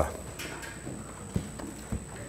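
Two soft knocks about half a second apart over faint room tone, from a book being handled and put down at a wooden lectern.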